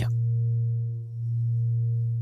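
Low, steady background drone like a sine tone that swells and fades, dipping once about a second in.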